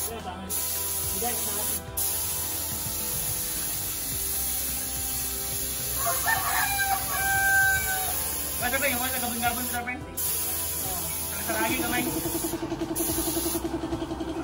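Compressed-air paint spray gun hissing as blue paint is sprayed onto a wall, stopping briefly a few times when the trigger is let go. A rooster crows several times in the background in the second half.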